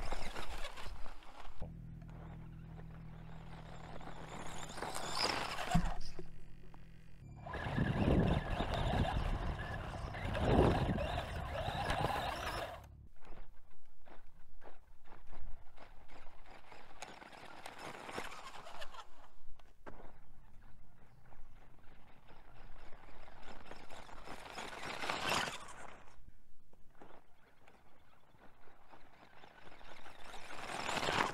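Electric RC10T RC car with a brushed motor accelerating at full throttle on dirt, motor whining and tyres spinning on loose gravel, heard over several separate runs. In the later runs the sound comes in short, stop-start bursts as the traction controller cuts the throttle whenever the wheels spin and then restores it.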